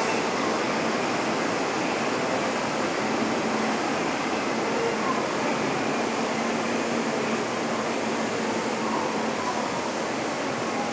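A station escalator running downward: a steady, even rushing noise with a faint hum, unchanging throughout.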